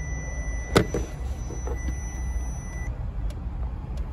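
Power Probe ECT3000 receiver sounding a steady high-pitched tone as it picks up the tracing signal on the wheel-speed-sensor wire; the tone cuts off suddenly about three seconds in. A sharp click about three quarters of a second in, over a low steady hum.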